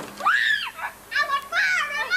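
Children shrieking and squealing at play, very high-pitched. There is one rising-and-falling shriek near the start, then a quick run of several more in the second half.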